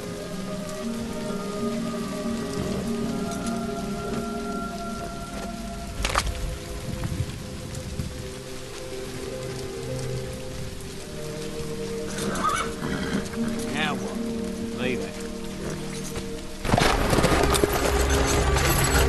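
Film score with sustained held notes over the steady patter of rain. A horse whinnies a few times about two-thirds of the way through. Near the end a much louder rush of noise comes in suddenly.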